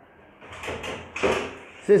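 Aluminium stepladder rattling and scraping under a man's weight as he climbs it, with two noisy clattering bursts, the louder one a little after a second in.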